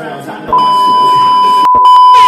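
The music cuts out and a loud, steady test-pattern beep, the tone that goes with TV colour bars, starts about half a second in. It is broken by a brief dropout near the end.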